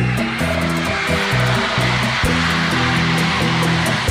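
Live bachata band playing an instrumental passage between vocal lines: bass notes and guitar under a steady roar of crowd noise from a large arena audience.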